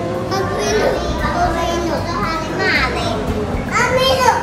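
Young children's high voices chattering and exclaiming over other voices, echoing in a large hall.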